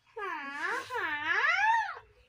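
A high voice singing a wordless, wavering tune, its pitch swooping up and down in long glides several times before stopping just at the end.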